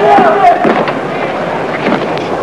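Men shouting in a scuffle: a raised voice near the start over a constant noisy din, with scattered sharp knocks and clatter.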